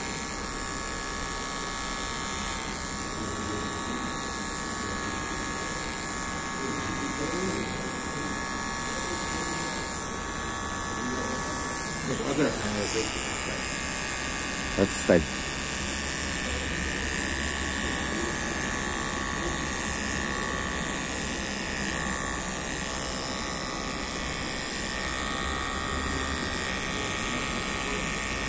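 Cordless electric beard trimmer running steadily as it cuts a beard, a buzzing hum with a thin whine over it. The whine shifts slightly in pitch about twelve seconds in.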